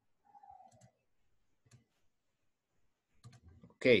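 Mostly quiet, with a few faint, sharp clicks, such as a computer mouse or pen tablet being clicked. A brief faint falling tone comes about half a second in, and a man starts to speak just before the end.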